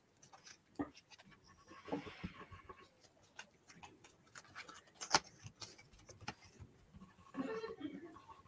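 Faint, scattered clicks and soft rustles from paper and craft materials being handled at a desk.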